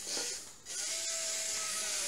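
A small robot's DC gear motors running as it reverses across a wooden floor. The noise drops briefly about half a second in, then settles into a thin steady whine as the robot catches its front edge on the floor and sticks.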